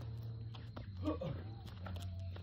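Quiet stretch with a low steady background hum and a single short, soft "oh" from a voice about a second in; no ball bounce or rim hit is heard.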